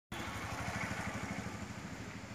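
An engine idling steadily, with a fast, even low throb.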